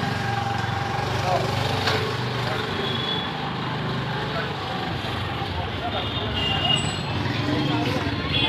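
Motorbike engine running steadily at low speed while riding through a narrow lane, with voices around it.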